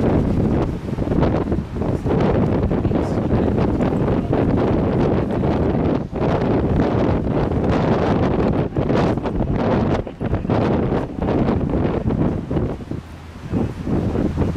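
Strong wind buffeting the microphone: a loud, gusting rumble with brief lulls about six and ten seconds in and a longer one near the end.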